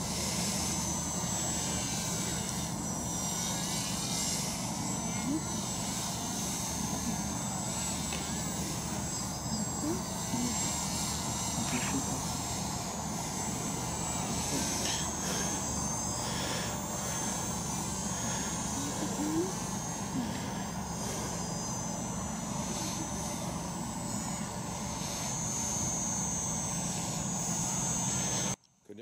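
Motors and propellers of two radio-controlled paramotor models flying overhead, a steady high whine that wavers slightly in pitch as they pass.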